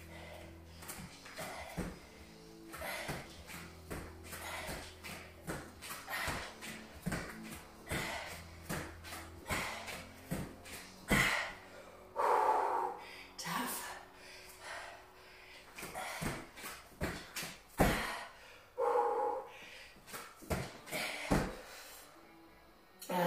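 A woman breathing hard and giving short exhaled grunts while exercising, over rock music with a steady beat.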